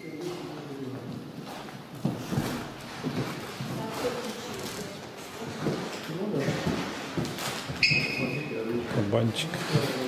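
Indistinct voices of people talking in a large, echoing hall. A short high electronic beep sounds about eight seconds in.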